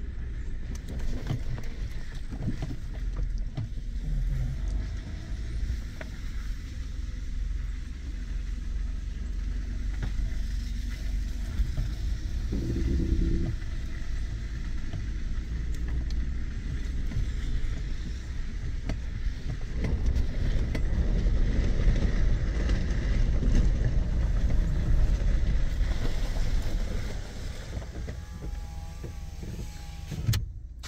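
Pickup truck being driven slowly over rough grassy ground, heard from inside the cab: a steady low rumble of engine and tyres with small knocks and jolts. It grows louder about two-thirds of the way through and eases off near the end.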